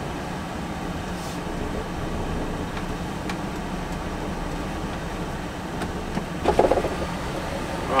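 Volvo FH lorry's diesel engine running at low speed, a steady rumble with a low hum heard from inside the cab as the truck creeps along a rough farm track. A brief pitched sound comes about six and a half seconds in.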